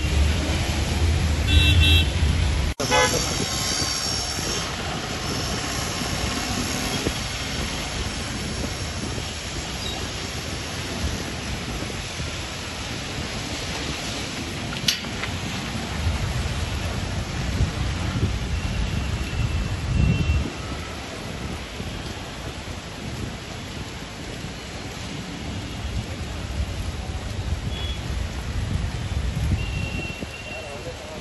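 Heavy rain falling on a wet street, with traffic running through the water. A few short car horn toots sound, one about two seconds in and more near the end.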